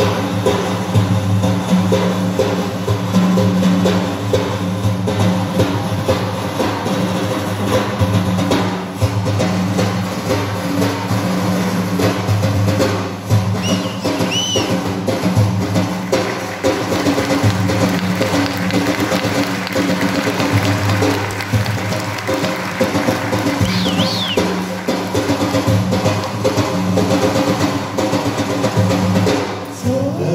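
Ensemble of daf frame drums playing a dense, continuous rhythm: deep low strokes under a constant jingling rattle of the drums' inner metal rings.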